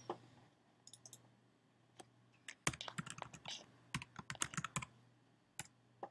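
Typing on a computer keyboard: a few scattered keystrokes, then a quick run of keystrokes in the middle as a one-word label is typed, and a last single keystroke near the end.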